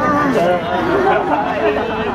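Several people's voices chattering at once, overlapping so no single speaker stands out: visitors talking in a crowd.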